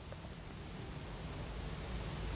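Faint room tone: a steady hiss with a low hum, slowly getting a little louder.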